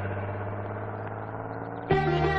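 Film background score: a held chord slowly fading, then a louder plucked-string music cue starting suddenly just before the end.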